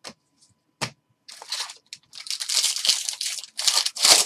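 Two short clicks as trading cards are flicked through, then a foil jumbo pack wrapper being torn open and crinkled, starting a little over a second in and getting louder.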